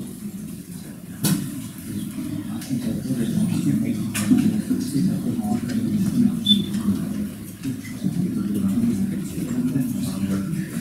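Indistinct low murmur of people talking off-microphone in a room, with two sharp clicks, about one second in and about four seconds in.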